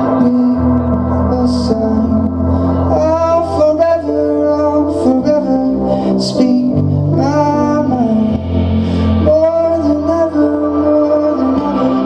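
Live band playing: electric bass, keyboards and drums, with a lead melody that slides between notes over sustained low bass notes.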